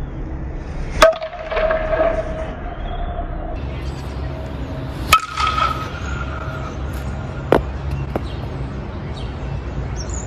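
Two hits off a DeMarini ZOA two-piece composite USSSA bat, about four seconds apart. Each is a sharp crack followed by a ringing ping that fades over a second or two. A fainter click comes near the end.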